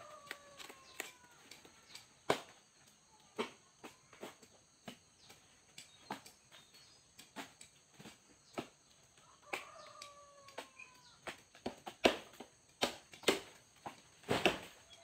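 Blade chopping fan-palm leaf stalks: sharp knocks at an irregular pace, about one a second, getting louder near the end. A drawn-out call falling in pitch sounds near the start and again about ten seconds in.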